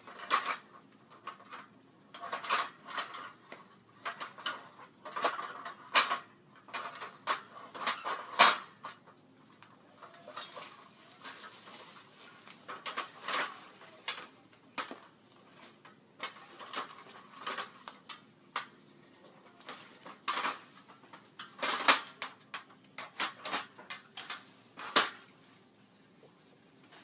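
Aluminium ladder clanking and rattling in irregular sharp metallic knocks as it is shifted into place and climbed, with quieter gaps between bursts of knocks.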